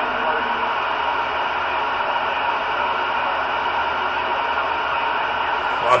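CB radio receiver on channel 19 (27.185 MHz) playing steady static hiss through its speaker, with no voice coming through.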